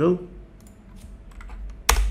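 Computer mouse and keyboard clicks: a few faint clicks, then one sharp, louder click near the end.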